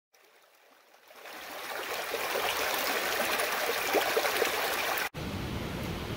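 Shallow creek rushing over rocks, an even water noise that fades in over the first second or two. It cuts off abruptly about five seconds in, leaving a quieter background hiss.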